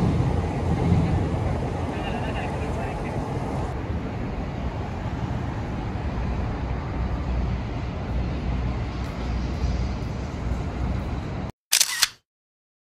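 City street ambience: a steady low rumble of road traffic with general street noise, ending in a short louder burst.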